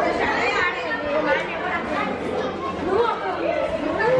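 Chatter of several people talking at once, the voices overlapping with no single speaker standing out.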